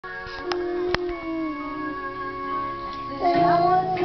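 Music with long held notes and two sharp clicks in the first second. About three seconds in, a young girl's singing voice comes in, louder.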